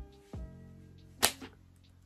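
Faint background music with steady held notes, broken by a soft low thump near the start and one sharp click about a second in.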